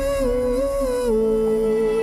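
Trailer score music: a held, pitched melody note that steps down twice, about a third of a second and a second in, with a lower line moving with it. A low rumble under it drops away about a second in.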